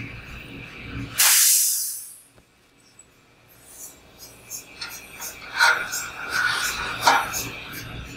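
Helium gas hissing from the storage dewar's open port as the liquid-helium transfer line is pulled out: a short, loud burst about a second in that fades away within a second. A few soft knocks and handling noises follow as the line is moved.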